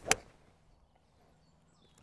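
A Callaway AI Smoke 7 hybrid striking a golf ball off the turf: a single sharp crack just after the start.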